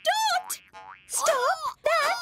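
Cartoon character voices calling out in short, sliding, sing-song cries, with a springy boing sound effect rising about half a second in.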